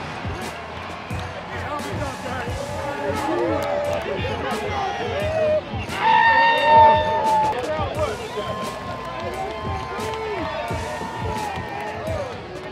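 Music under indistinct shouting and chatter from football players, with one loud, drawn-out yell about six seconds in and scattered sharp slaps.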